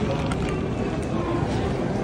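Airport terminal ambience: a steady low rumble with faint, indistinct voices in the background.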